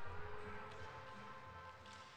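Faint music played over the arena's sound system, fading away.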